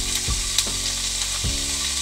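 Green beans frying in oil in a pan, a steady sizzle, with a few soft knocks.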